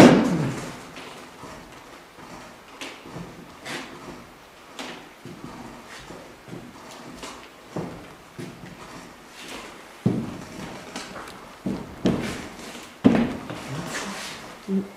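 Footsteps on a loose wooden floor plank that knocks and creaks underfoot, several times at irregular intervals, loudest near the end.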